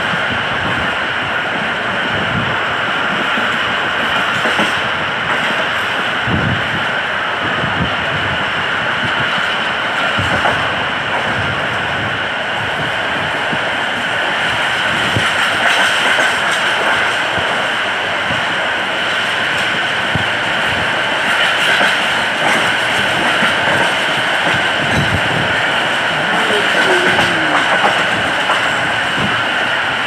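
Passenger train running along the track, heard from an open coach doorway: steady rolling noise of steel wheels on rails with a constant high-pitched ring, and irregular low knocks as the wheels pass over rail joints.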